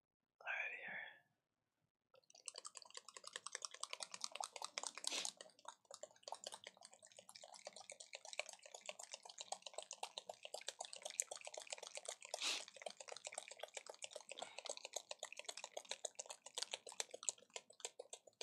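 Rapid, irregular clicking and tapping, dense and continuous from about two seconds in, after a brief faint voice sound.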